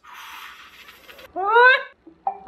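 A breathy hiss lasting about a second, then a short, loud vocal "ooh" from a man, rising in pitch.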